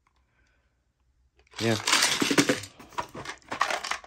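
After about a second and a half of near silence, plastic parts cases clatter as they are handled: a clear organizer box of screws and wall anchors rattles and a plastic bit-set case knocks against it.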